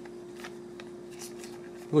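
A stack of glossy Panini Mosaic basketball trading cards being handled and flipped through, with a few faint slides and clicks of card against card, over a steady low hum.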